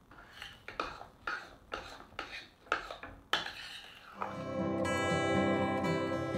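A spoon stirring thick pancake batter in a mixing bowl, with short scraping strokes about two a second. About four seconds in, acoustic guitar music comes in.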